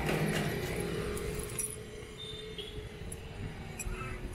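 A motorcycle's engine hum fading over the first two seconds or so as it moves away. It leaves a quieter lane with a few faint light ticks and a short high tone.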